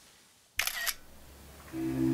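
A smartphone camera's shutter sound: one short, sharp click about half a second in. Sustained low music comes in near the end.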